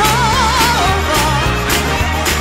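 Recorded gospel song: a solo singer holds a wavering note with vibrato over steady bass and a drum beat.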